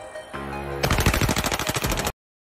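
Automatic gunfire: a rifle fired in one long rapid burst, about ten shots a second, starting about a second in, over music.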